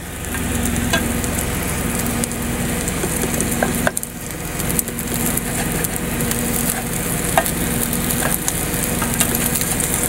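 Cheese omelette sizzling in a frying pan, with a few short scrapes and taps of a spatula against the pan. A steady low hum runs underneath.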